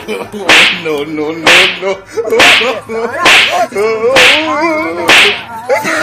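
Loud slaps landing on a boy's back at a steady pace of about one a second, six in all, comedy-beating style, with the boy crying out between the blows.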